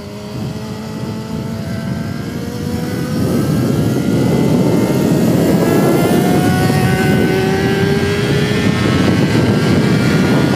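Yamaha YZF-R6 inline-four engine accelerating hard out of a corner, its pitch climbing steadily through the revs. Wind noise on the microphone builds about three seconds in and stays loud as speed rises.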